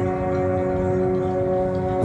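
Background music: a steady held chord between sung lines of a song, with no singing.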